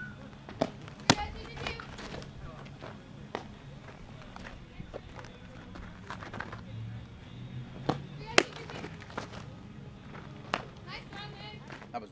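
Softballs popping into leather gloves and a catcher's mitt during a throwing drill: several sharp pops spread out, the loudest about a second in and about eight seconds in, with faint voices calling in the background.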